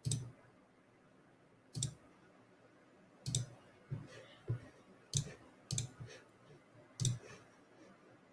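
Computer mouse clicking: about nine separate sharp clicks at irregular intervals, roughly one every half second to second and a half.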